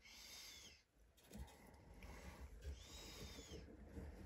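Nylon paracord being pulled through the fingers and the knot, a faint zipping rub that rises and falls in pitch as the pull speeds up and slows. It comes twice, once at the start and again about two and a half seconds in.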